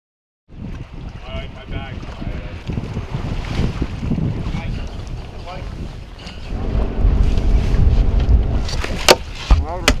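Boat's outboard motor running under wind rumble on the microphone, with faint voices about a second in and two sharp knocks near the end.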